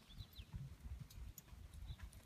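Faint hoofbeats of a Tennessee Walking Horse at a walk: soft, dull thuds.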